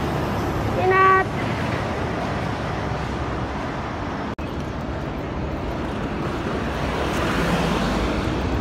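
Steady road traffic noise beside a street, with a brief single-pitched tone about a second in and a momentary cut-out in the sound about four seconds in. The traffic swells slightly near the end.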